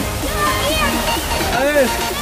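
Shallow river rushing over rocks and small rapids, a steady watery noise, with voices and music on top.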